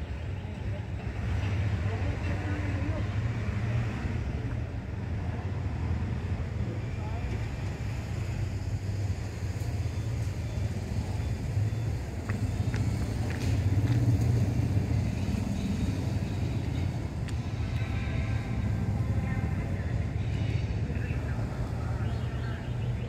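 Steady low rumble of a passenger train coach rolling slowly during shunting, heard from aboard, with a few brief clicks of wheels over rail joints.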